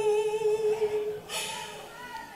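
A woman's voice singing copla, holding one long note at a steady pitch that dies away a little past a second in, followed by a brief hiss.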